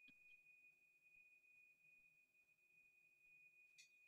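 Near silence, with a faint steady high-pitched tone and a couple of faint ticks.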